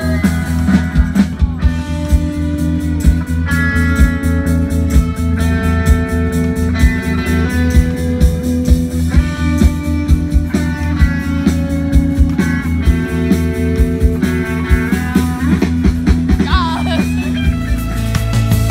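Live band playing a rock song, with guitars and drums keeping a steady beat under held melody lines from the horn and strings. A sung phrase comes in briefly near the end.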